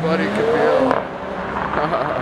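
A Mercedes-AMG GT four-door car pulling away and accelerating. Its engine note rises in pitch over the first second.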